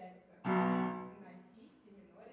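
Upright piano: a loud chord struck about half a second in, ringing and fading over the next second, in a slow passage built on the B–F tritone (an augmented fourth).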